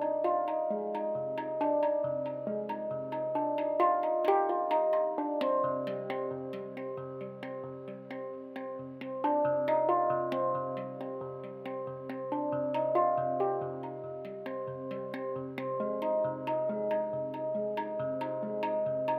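Handpan played with the fingers: struck steel notes ringing and overlapping in a melody, over a low note repeated in a steady pulse.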